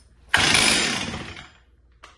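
Stihl MS 440 two-stroke chainsaw pull-started once on full choke: the engine catches briefly and dies away within about a second. This first 'turning over' is the sign to take it off full choke.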